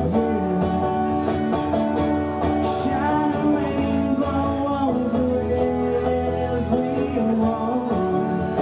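A man singing live to his own strummed acoustic guitar, heard through a small PA.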